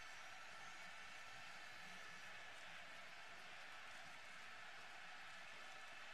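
Near silence: a faint, steady hiss of arena room tone with no distinct events.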